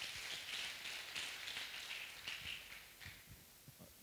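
Audience applauding: a hall full of clapping hands that dies away about three and a half seconds in.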